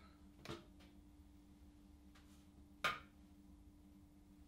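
Mostly quiet room tone with a faint steady hum, broken by two small clicks from handling the rotation disc just removed from a rotation diluter: a soft one about half a second in and a sharper, louder one near three seconds.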